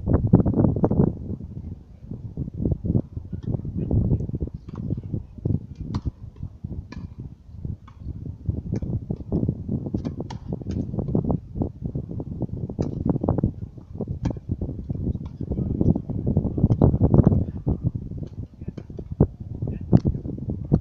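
Tennis rally: rackets striking the ball in a string of sharp pops, about a second or so apart, over murmured voices.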